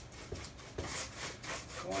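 Paintbrush being dragged across a textured faux-wood board as a base coat of flat white paint goes on, a run of short, soft rubbing strokes about three a second.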